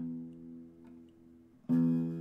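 Archtop guitar: a chord struck right at the start rings and fades, then a second, louder chord is struck about a second and a half later and rings on, as the guitar is checked for tuning.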